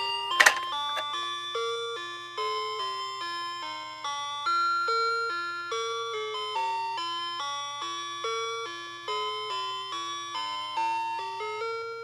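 Megcos pull-along musical telephone toy playing its first electronic tune: a melody of chime-like beeping notes, one after another, each fading, over a steady low buzz from the toy's speaker. A sharp click from a key press comes about half a second in.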